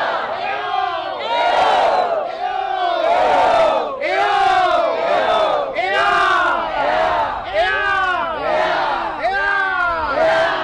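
A large crowd chanting and shouting in unison: loud calls from many voices, each rising and then falling in pitch, repeated over and over.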